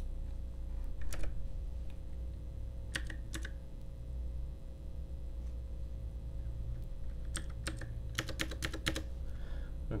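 Computer keyboard being typed on: a few separate keystrokes in the first few seconds, then a quick run of about ten keystrokes near the end, over a low steady hum.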